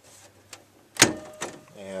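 Wooden closet door knocking: a light click about half a second in, then one sharp, loud knock about a second in, over a low steady hum.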